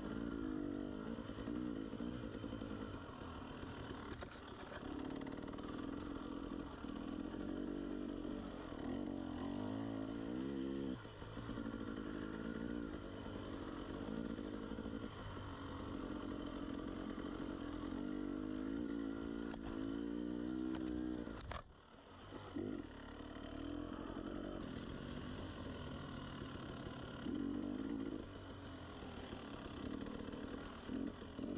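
KTM 300 two-stroke enduro motorcycle engine running under way, its pitch rising and falling with the throttle. About three-quarters of the way through the throttle is shut briefly and the sound drops away, then picks back up.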